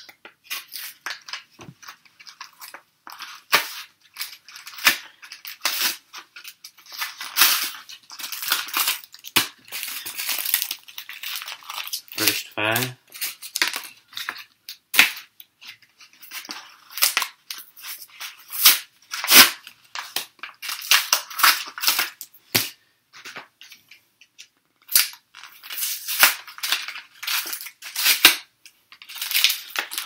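Foil trading-card booster pack wrappers being handled and torn open by hand, a dense run of sharp, irregular crinkles and crackles.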